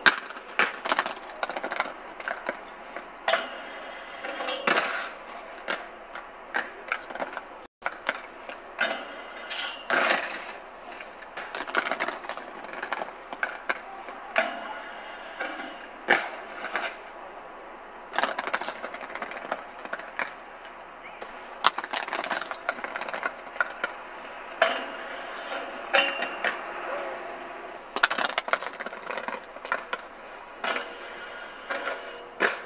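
Aggressive inline skates rolling over stone paving and concrete steps. Frequent sharp clacks and scrapes come as the skate frames hit and slide on a metal stair handrail and the steps during repeated trick attempts. There is a brief total dropout about eight seconds in.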